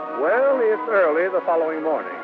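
A voice speaking as the orchestral bridge music of an old radio drama dies away.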